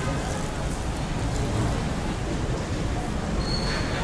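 Steady background rumble and noise of a busy mall food court, with a brief thin high beep near the end.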